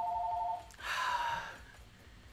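Home telephone ringing with a steady two-tone electronic ring that stops less than a second in, followed by a short breathy exhale.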